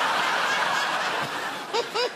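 Studio audience laughing, a dense wash of laughter that thins near the end into a few separate laughs.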